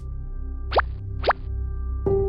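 Soft cartoon background music with held tones, and two quick plop sound effects with falling pitch, about half a second apart, near the middle.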